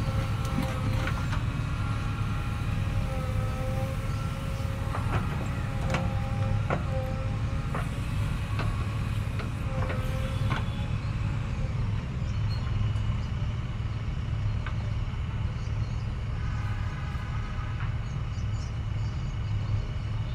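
JCB backhoe loader's diesel engine running steadily under load as the backhoe digs. A hydraulic whine wavers in pitch with the arm's movements, with scattered knocks of the bucket, mostly in the first half.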